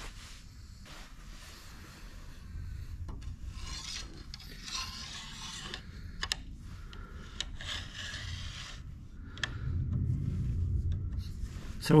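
Steel gib strip sliding and scraping metal on metal as it is pushed by hand into the dovetail of a lathe cross slide for a test fit, with a few light clicks. The scraping grows louder a little after ten seconds in.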